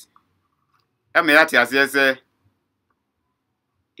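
A man speaking one short phrase about a second in, between stretches of dead silence.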